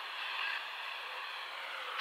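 Steady low hiss of background noise, even and unbroken.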